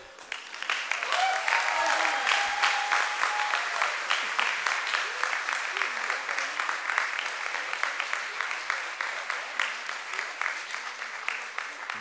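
Large audience applauding, filling out within about a second and slowly thinning over the following seconds.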